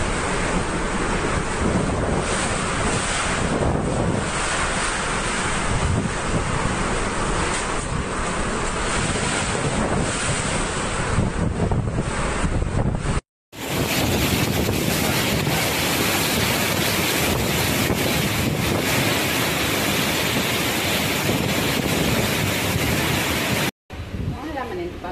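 Typhoon wind with driving rain, a dense, steady rush with heavy wind buffeting on the microphone. The sound drops out for a moment about 13 seconds in and comes back brighter and hissier.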